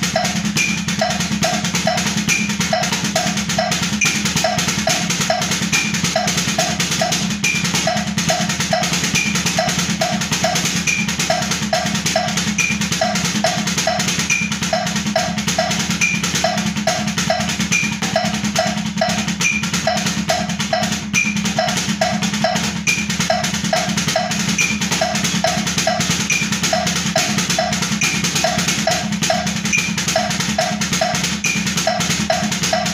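Drumsticks striking a practice pad in a steady, unbroken repeating sticking pattern, right-left-right-right-left-right-right-left, at 140 beats per minute, over a regular higher tick keeping time.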